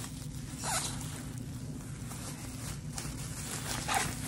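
Plastic bubble wrap rustling and crinkling as it is handled and folded, with a louder rustle about a second in and another near the end, over a steady low hum.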